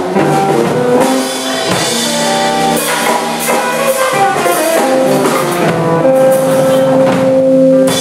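Blues band playing live: electric guitar over electric bass and drum kit, with no singing, ending on a long held note near the end.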